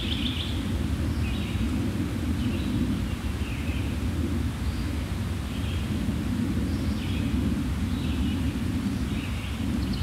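Woodland ambience: a steady low rumble with short, high bird chirps about once a second.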